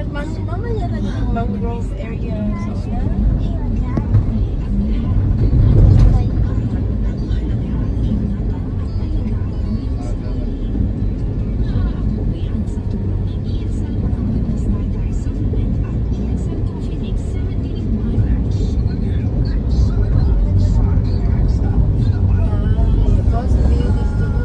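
Steady low road and engine rumble of a moving car, heard from inside the cabin, with music and indistinct voices playing faintly underneath.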